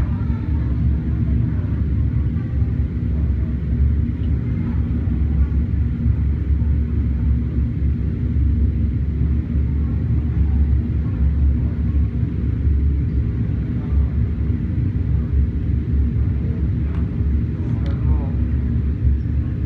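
Steady low rumble of laboratory fume-hood ventilation, an even drone with no rhythm or breaks.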